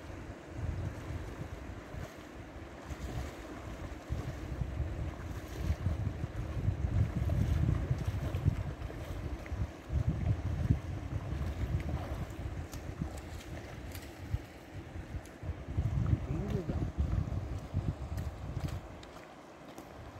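Wind buffeting the microphone in uneven gusts, over the steady hiss of a flowing river.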